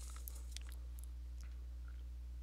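A few faint clicks and scratches of an artist's brush working oil paint, most of them in the first second and a half, over a steady low hum.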